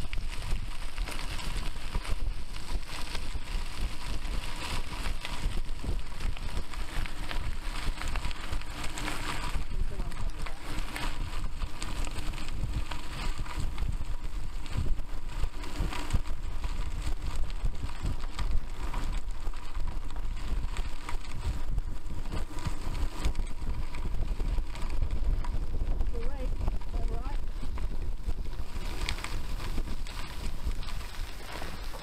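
Wind buffeting the microphone of a camera carried on a moving bicycle, over the crunch and rattle of the bike's tyres rolling on a gravel trail.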